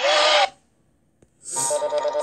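Sound effects from a children's story app. A brief bright chime-like sound plays at the start. Then, after a single click, a short jingle with a fast warbling trill and sparkling high chimes begins as the page fades over.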